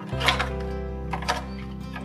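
Background music with a steady tone. Two brief rustles, about a quarter second in and again just past a second in, as a plastic alphabet mold is slid out of its cardboard box.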